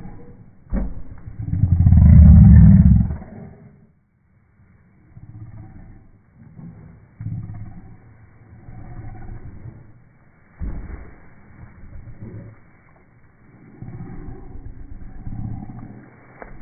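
A large pit bull vocalizing in deep, growl-like sounds, loudest about two seconds in, then quieter rumbling noises on and off. A single sharp knock comes just before the loudest sound.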